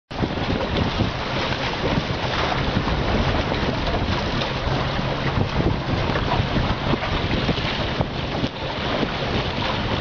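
Wind blowing hard on the microphone, with water rushing along the hulls of a small beach catamaran sailing upwind. The noise is loud and steady throughout.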